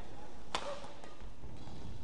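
Badminton racket striking the shuttlecock once on an overhead stroke: a single sharp crack about half a second in, over the steady low noise of the hall.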